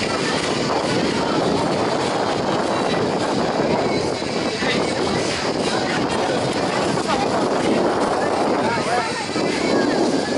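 Steady engine drone of a tour boat under way, with people's voices chattering.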